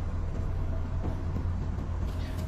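Electric scooter's rear hub motor spinning on the throttle with the wheel unloaded, making a steady low hum: very noisy, the sign of a failing motor.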